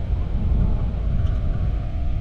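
Steady low rumble of a Ram 2500 Power Wagon's engine and tyres as it drives slowly along a gravel dirt track, heard from inside the cab.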